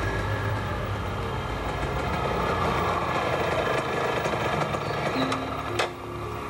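Small motorcycle engine running as the bike rides along the street, with a sharp click shortly before the end.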